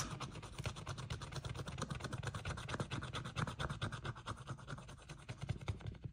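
A metal-tipped scratcher scraping the glitter coating off a scratch-off sticker on a paper page, in a fast, even run of short scratching strokes.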